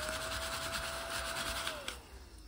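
A scratch-off sticker being rubbed off a paper savings-challenge card with a hand-held tool: a continuous rough, rapidly repeating scratching. A steady pitched tone runs with it and slides down near the end.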